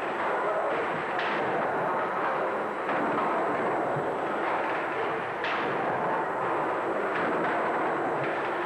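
Victorian steam beam pumping engine running: a steady noisy mechanical rush with a few irregular knocks from the engine gear.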